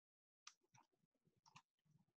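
Near silence, with faint scattered fragments of sound that start and stop in short pieces.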